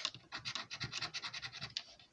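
Plastic scratcher scraping the latex coating off a scratchcard in quick short strokes, about ten a second, stopping just before the end.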